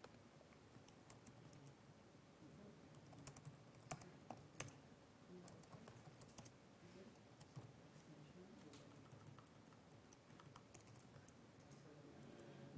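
Faint typing on a computer keyboard: scattered key clicks, with a few louder ones around four seconds in.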